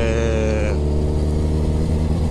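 Suzuki Hayabusa motorcycle's inline-four engine running at steady revs with a low, even hum while riding.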